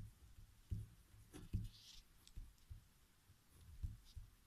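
Faint scratching of a pen writing on a paper worksheet, with soft low thumps from the hand and pen against the surface underneath.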